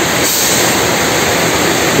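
Heavy rain falling steadily, a loud, even hiss.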